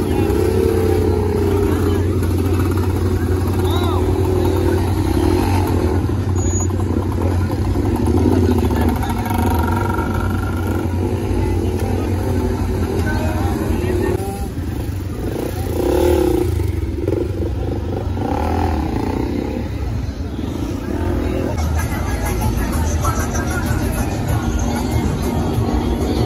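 Several motorcycle engines running and revving, with crowd chatter over them.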